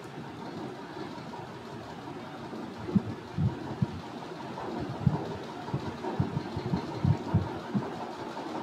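A steady low hum of room noise with a series of soft, dull taps starting about three seconds in and repeating irregularly.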